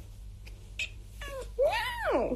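Domestic cat meowing: a short call a little past a second in, then a longer meow near the end that rises and then falls in pitch.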